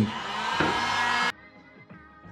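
Electric hot-air gun blowing loudly for just over a second, heating contact glue to soften it, then cut off abruptly. Faint background music with a beat follows.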